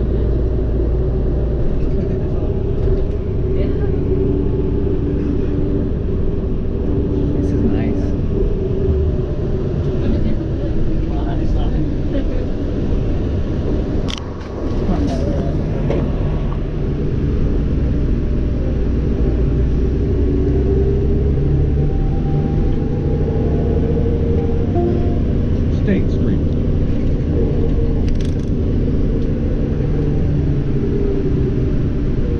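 Engine and road rumble heard from inside a moving vehicle, steady throughout, with a brief dip in level about halfway through.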